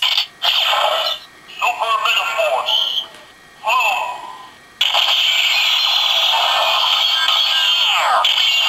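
Power Rangers Super Megaforce Legendary Morpher toy playing electronic sound effects and voice clips through its small speaker as the Blue Ranger Key is inserted, thin with no low end. A few short bursts with gliding, voice-like pitches come first, then a continuous loud effect starts about five seconds in.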